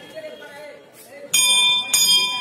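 Hindu temple bell rung twice in quick succession, struck about a second and a half in and again half a second later, then ringing on with a clear, slowly fading tone.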